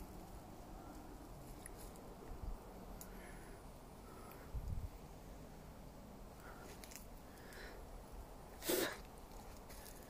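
Faint steady background hush with a couple of soft low bumps and one brief breathy noise near the end.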